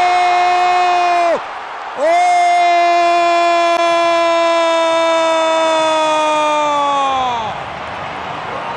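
A football commentator's drawn-out goal shout: one long held cry that breaks off about a second and a half in, then a second one held for over five seconds whose pitch sags as the breath runs out near the end. Crowd noise sits underneath.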